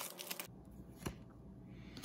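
Foil wrapper of a hockey card pack crinkling as it is pulled open, stopping about half a second in, then a single faint click.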